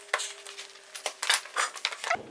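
Rustles and irregular light clinks of work gloves and a tool pouch being handled and put down on a wooden workbench.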